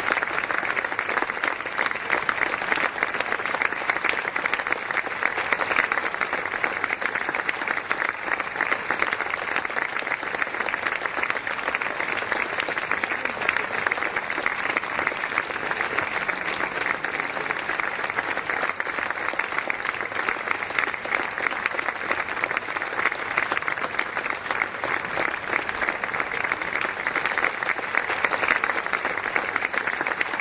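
An audience applauding, a dense and steady clapping.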